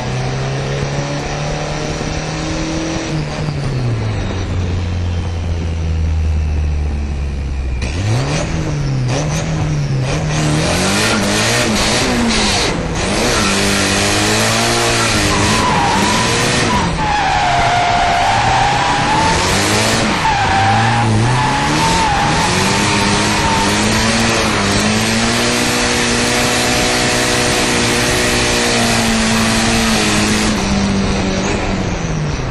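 Nissan 180SX drift car's engine heard from inside the cabin. It runs fairly evenly for the first several seconds, then from about eight seconds in the revs rise and fall again and again under throttle through a drift. A high tyre squeal lasts several seconds around the middle.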